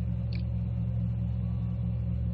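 A steady low hum on the audio line of a remote connection, with one faint brief sound about a third of a second in.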